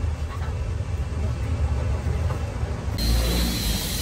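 A steady low rumble from unseen machinery or traffic. About three seconds in, a brighter hiss joins it.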